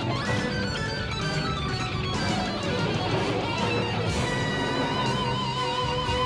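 Electric guitar lead played over a live rock band and symphony orchestra, with sustained notes that waver with vibrato in the second half.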